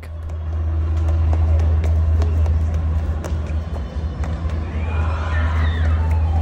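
Raw outdoor ambience recorded as it is, dominated by a loud, steady low rumble, with faint ticks and a few faint pitched sounds near the end.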